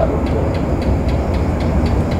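Steady low rumble with faint, evenly spaced high ticks above it.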